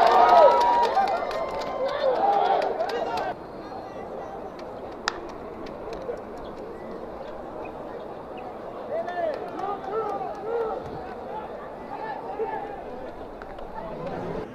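Voices of spectators and players calling out and shouting at a ballpark, loud for the first three seconds and then dropping suddenly to a quieter crowd background. There is one sharp knock about five seconds in, and a few more calls near the end.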